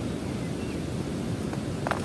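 Steady rush of river water mixed with wind on the microphone, with a short sharp click near the end.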